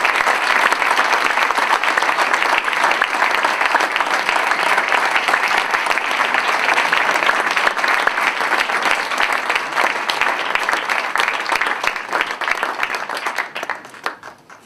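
Audience applauding, loud and steady, dying away near the end.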